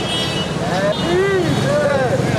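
Voices of people talking over a steady low background hum, with a few rising and falling voice sounds near the middle.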